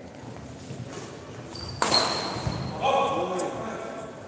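Badminton play on an indoor court: a sharp smack about two seconds in, followed by a high, steady squeak of shoes on the court floor lasting almost a second, with a dull thud of footfall and then voices calling out.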